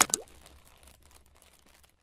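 Cartoon-style pop sound effects for an animated like-button graphic: a sharp pop at the start with short rising slides in pitch, then faint crackles fading to nothing.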